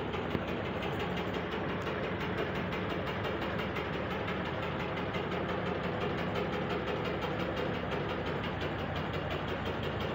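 Sony ceiling fan with one blade bent up and one bent down, running at full speed with a steady drone and a fast, even pulsing. The pulsing comes from the unbalanced blades making the fan wobble dangerously.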